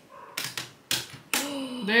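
Three sharp plastic clicks, about half a second apart, as parts of a Clockwork DevTerm kit's case are pressed and snapped together by hand.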